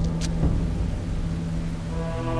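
A low rumble under a steady low hum, with a brief sharp click just after the start.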